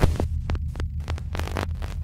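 Electronic intro sound effect: a deep throbbing hum with irregular glitchy clicks and crackles over it.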